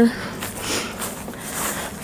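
Footsteps through grass, soft rustling steps about every half second.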